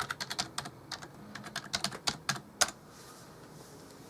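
Computer keyboard being typed on: a quick, uneven run of key clicks that stops about two and a half seconds in.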